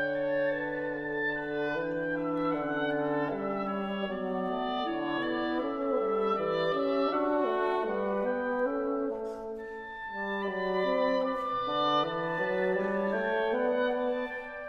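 Wind trio of oboe, clarinet and bassoon playing a slow Andante, the three lines overlapping in sustained notes with a slight dip in level about ten seconds in.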